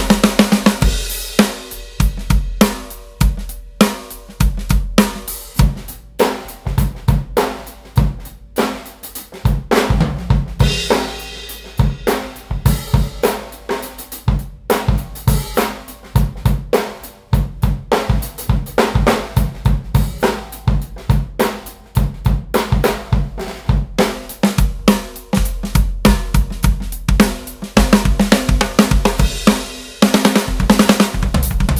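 Drum kit groove built around a Pearl steel piccolo snare drum (13x3) at medium tuning, with bass drum, hi-hats and cymbals. It is heard partly through the close-miked full mix and partly through the room microphones.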